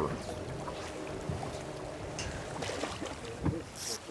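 Steady rush of a wide river's current washing along a rocky bank, with wind on the microphone and a short burst of hiss near the end.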